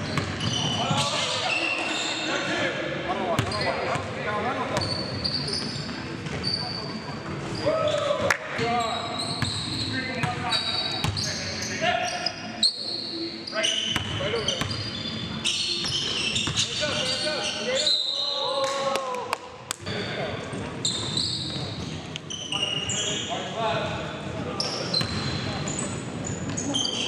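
Live basketball play on a hardwood gym floor: a basketball being dribbled and bouncing, many short high-pitched sneaker squeaks, and players' voices calling out on the court.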